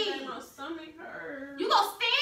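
A person's voice making short vocal sounds with no clear words, rising to a louder burst near the end.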